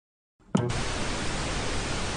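Television static sound effect: a short click about half a second in, then a steady hiss of white noise.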